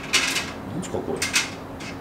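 Small metal grill-assembly parts such as screws and bolts clicking and clinking as they are handled and sorted by hand: several short, separate clicks.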